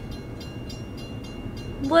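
Railroad crossing warning bell dinging rapidly and steadily while the gates are down, heard from inside a waiting car over a low steady rumble.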